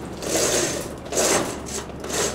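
Drive chain of a Manfrotto backdrop roller rattling through its drive as it is pulled hand over hand, unrolling a vinyl backdrop. It comes in three bursts, one for each pull of the chain.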